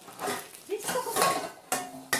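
Aluminium cooking pots clanking and clattering against each other as a toddler bangs them, a run of sharp metallic knocks with a short ring, thickest in the middle.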